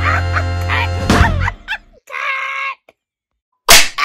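Background music stops about a second and a half in with a falling sweep, and a short held tone follows. After a brief silence, a loud sharp clap lands near the end: a clapperboard snap sound effect.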